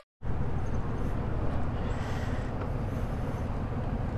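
Yamaha MT-07's parallel-twin engine idling steadily through an M4 full exhaust, a low even sound that starts a moment in after a brief silence.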